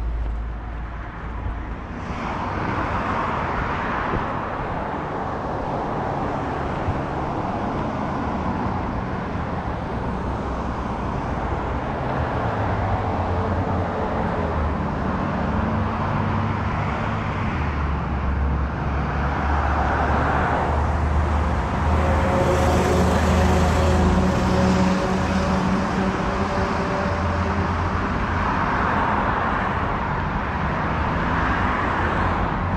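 Street traffic on wet pavement: a continuous hiss of tyres, with a vehicle engine growing louder through the middle and peaking a little past twenty seconds in as it passes close by.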